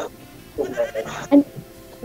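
A person's voice making short wavering vocal sounds over quiet background music.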